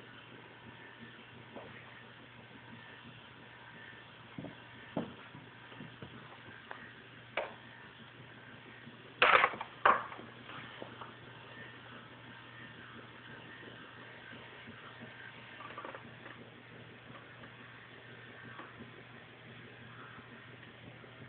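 Small mechanical clicks from a 1:55 scale remote-control model crane at work, over a faint steady hum, with two sharp, loud clacks close together about halfway through.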